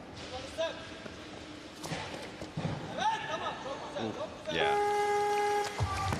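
Arena crowd shouting encouragement during a snatch lift. About four and a half seconds in, a steady electronic buzzer sounds for just over a second: the referees' down signal that the lift may be lowered.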